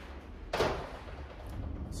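A single sharp metallic knock about half a second in from the piston and its just-removed top compression ring being handled at the steel workbench, followed by a couple of faint ticks, over a steady low hum.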